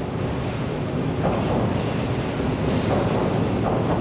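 24-series sleeper coaches rolling slowly into the platform: a steady low rumble of steel wheels on the rails, with a couple of faint clacks over rail joints.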